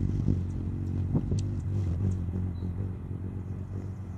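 Hummingbird wings humming close to the microphone as it hovers, a low buzzing drone that comes on suddenly and fades about two and a half seconds in. A few short, faint high ticks sound over it.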